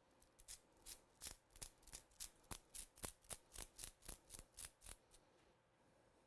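Plastic-bristled splatter brush tapped again and again against a fingertip, flicking ink spatters onto the card: a quick, even run of faint ticks, about three a second, that stops about a second before the end.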